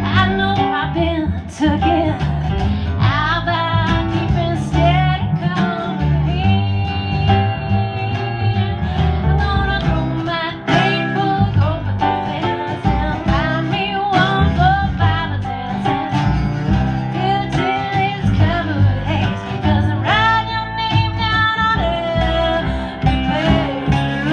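Live country music led by a lap-style slide guitar, its notes gliding between pitches, over a steady, pulsing low accompaniment.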